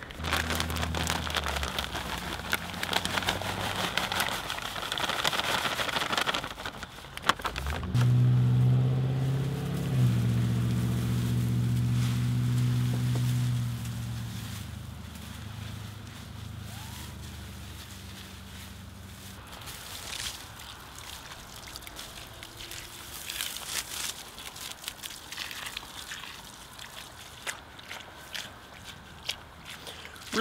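Coffee grounds spill out of a foil bag onto a compost pile of leaves and grass clippings, with crinkling and a rough, crackly patter. Then the mixture is rustled in by hand. A steady low engine hum is loudest from about eight seconds in and fades out over the following several seconds.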